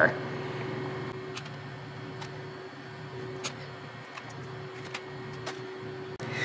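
Steady low electrical hum in a kitchen, with a few light clicks and taps as bacon slices are handled and pressed into a muffin pan.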